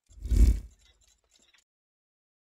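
Logo-reveal sound effect for an animated end card: a single whooshing metallic hit with a deep boom that fades within about a second, followed by a few faint ticks.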